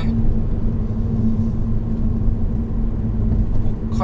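Honda Odyssey RB3 minivan being driven, heard from inside the cabin: steady engine and road rumble with a low, even hum.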